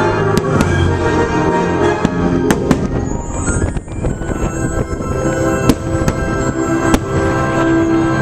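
Aerial fireworks bursting, a series of sharp bangs spread through, over loud sustained show music.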